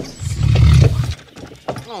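A deep animal roar lasting about a second, loud and low, followed near the end by a voice saying 'oh'.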